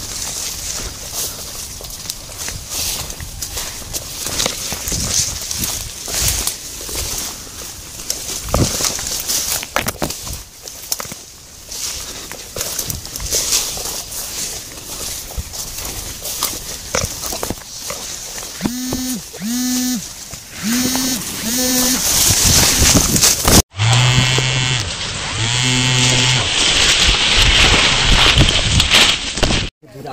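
Leaves and branches brushing and rustling as someone pushes through dense undergrowth holding a phone, with crackling handling noise against clothing. Toward the end come several short, steady-pitched calls, like people shouting out, and the sound cuts out for a moment before more calls.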